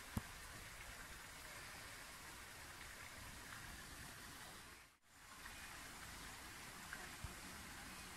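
Faint, steady hiss of light rain falling on a wet path. A single click comes just after the start, and the sound briefly drops almost to nothing about five seconds in.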